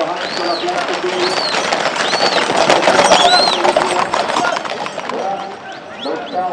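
Hooves of a tight group of galloping horses clattering on a paved street, loudest about halfway through. People call out over it, with a rising-and-falling call repeated about once a second.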